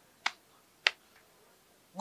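Two sharp finger snaps about half a second apart.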